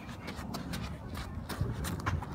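Footsteps on a sand-strewn rubber playground surface: a quick, irregular series of scuffs.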